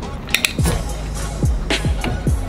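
Background music comes in about half a second in, with a deep bass-drum beat whose hits fall in pitch, after a couple of sharp clicks.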